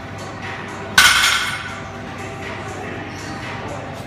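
A 100 kg plate-loaded barbell touching down on the gym floor between deadlift reps: one sharp clank of the plates about a second in, with a brief metallic ring.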